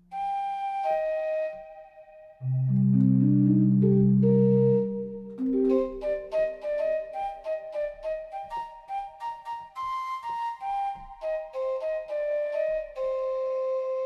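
Flute patch of UVI's Quadra Traveler software instrument played from a keyboard. It opens with a couple of held notes, then a louder low note held for about two seconds, then a long run of quick notes stepping up and down.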